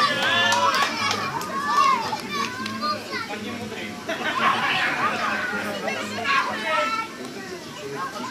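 Young children shouting and calling out excitedly, many high voices overlapping, just after a goal has gone into the net; the noise eases a little near the end.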